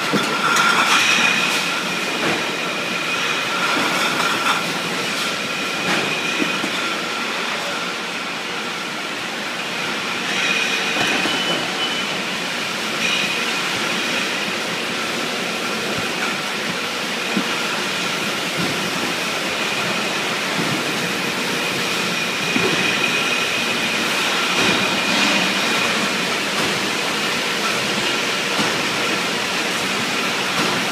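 Beer bottling line running: a steady loud din of glass bottles clinking and rattling as they crowd along chain conveyors, over a steady high machine whine.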